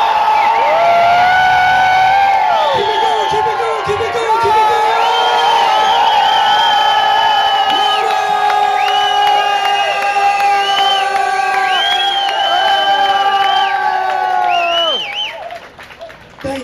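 Crowd yelling, screaming and whooping together on cue, many long held voices at once, dying down about a second before the end.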